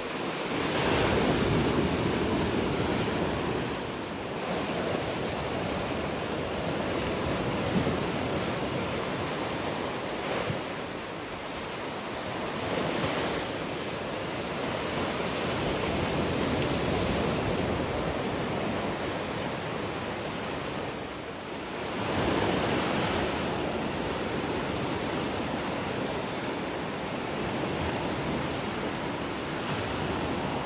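Small sea waves breaking and washing in the shallows: a steady surf hiss that swells and eases every few seconds as each wave breaks.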